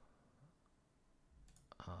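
Near silence, then a couple of faint computer mouse clicks about a second and a half in.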